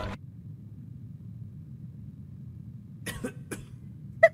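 A low, quiet hum for about three seconds, then a man lets out a few short, breathy bursts from the mouth, like a chuckle or a cough.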